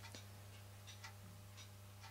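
Near silence with a handful of faint, irregular ticks over a low steady hum: the small brass rocking-piston toy steam engine's flywheel and crank being turned slowly by hand.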